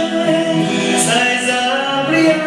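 A group of teenage boys and girls singing together, with long held notes.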